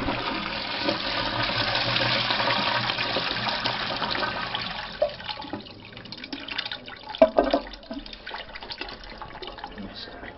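A lever-flush toilet flushing: a loud rush of water into the bowl that fades after about five seconds into a quieter swirl and drain, with a few short clunks in the second half.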